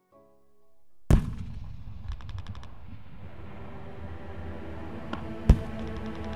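Battle sound effects of gunfire and explosions: a single loud bang about a second in, a short rapid rattle of machine-gun fire around two seconds, then a steady low rumble, and a second sharp bang near the end.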